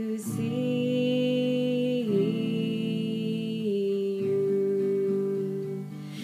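A woman singing long, slowly held notes over acoustic guitar, the melody stepping down twice.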